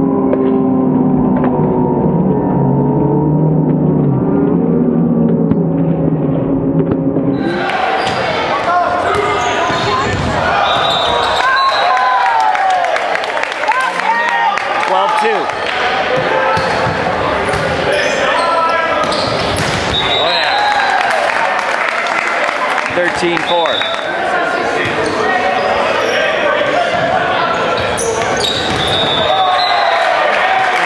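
Indoor volleyball match in a gym: players' shouts and voices, short squeaks and the thuds of the ball being hit. For the first seven seconds or so the sound is muffled and held by steady sustained tones, which stop abruptly.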